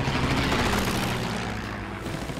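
Propeller warplane engine drone in a sound-effect fly-by: a rushing noise swells in the first second, then fades away as the plane passes.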